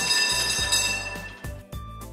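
A sudden ringing, bell-like tram sound effect: several high metallic tones over a hiss, starting at once and fading over about a second and a half. It plays over light background music with a steady beat.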